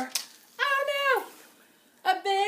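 One short, high-pitched vocal sound, its pitch arching up and down, about half a second in and lasting under a second, with a light click just before it.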